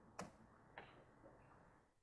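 Three faint, separate clicks of computer keyboard keys being typed, with near silence around them.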